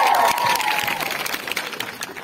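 Audience clapping and cheering, with a high, held shout from the crowd that trails off about a second in. The clapping thins out toward the end.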